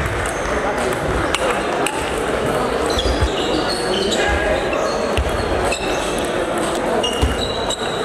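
Table tennis balls clicking irregularly off bats and tables from several tables at once, over a steady murmur of voices in a large, echoing sports hall.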